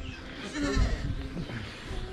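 A young goat bleating once, briefly, about half a second in.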